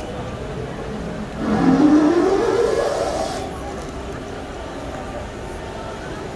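A motor vehicle's engine speeding up as it passes, its pitch rising steadily for about two seconds, starting a little over a second in, over steady street background noise.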